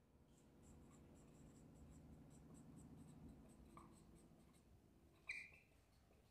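Felt-tip marker writing on a whiteboard: faint, quick strokes, with one brief louder stroke near the end.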